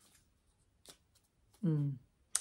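Quiet pause with faint paper rustles and a small click about a second in, as the pages of a notebook are handled; a short vocal sound from a woman comes near the end.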